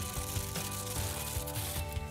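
Aluminium foil crinkling as a foil tent is lifted away, the rustle stopping near the end. Soft background music with held tones plays underneath.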